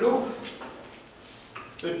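A man speaking, trailing off into a pause of about a second and then starting to speak again near the end.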